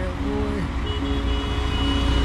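Low rumble of road traffic, growing louder toward the end as a vehicle approaches, with background music of held notes over it.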